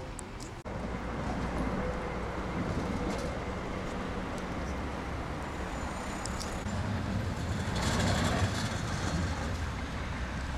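Street traffic with a tram going by, a steady rumble that swells louder about eight seconds in.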